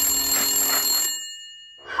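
A phone ringing for an incoming call, a steady ring of several held tones that stops a little after a second in and fades away.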